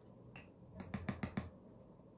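Light taps from handling a loose-powder jar and makeup brush: a single tap, then a quick run of about six taps about a second in.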